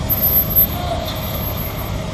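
Concrete mixer truck's diesel engine running steadily at a standstill, a continuous low hum with a steady tone above it.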